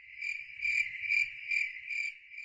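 Crickets chirping: a high, steady trill that swells and fades about twice a second.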